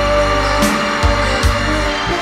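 Live band music, an instrumental passage of a pop-rock song with no voice: a steady bass line and held chords, with two drum hits about a second in and near the end.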